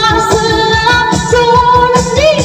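A woman singing live into a handheld microphone through a PA, with long held notes that waver, over backing music with a steady beat.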